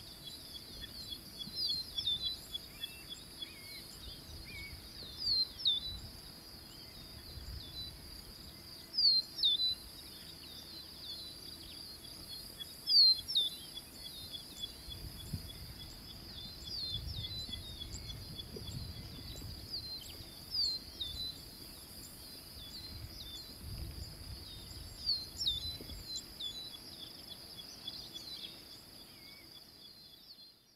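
Outdoor bush ambience: birds giving short, sharp, falling chirps every second or two, the loudest about nine and thirteen seconds in, over a steady high insect drone, with a few soft low rumbles.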